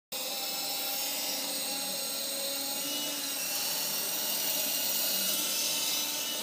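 Small electric remote-controlled helicopter's motors and rotor blades running, a steady high-pitched whine.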